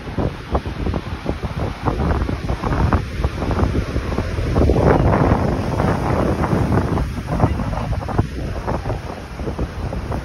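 Rough sea surf breaking and washing over boulders below a sea wall, with strong wind buffeting the microphone in irregular gusts that are heaviest around the middle.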